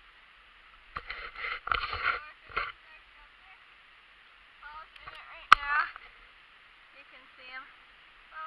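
Quiet, thin-sounding voices speaking indistinctly, with a few bursts of rustling noise in the first few seconds and one sharp click about halfway through.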